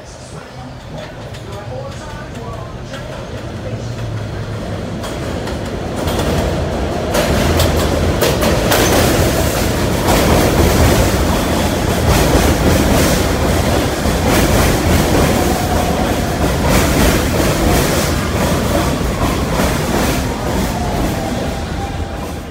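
Subway train arriving at an elevated station. It grows steadily louder as it approaches, and from about six seconds in the steel wheels clatter and click over the rail joints as the cars pass close by.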